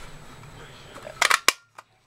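Quiet room tone, then a quick run of three or four sharp clicks and snaps from paper and craft tools being handled on the table, a little over a second in; the sound then cuts out abruptly.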